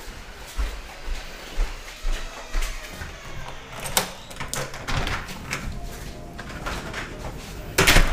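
Footsteps and handling noise as someone walks through a room, then a house door's knob and latch clicking as it is opened about halfway through. A second, louder click or knock comes near the end.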